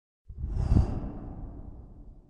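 A whoosh sound effect for the logo reveal. It comes in suddenly, peaks just under a second in, then fades away gradually.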